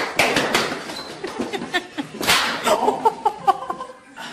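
Running footsteps slapping on a hard tiled floor, with one louder smack a little over two seconds in.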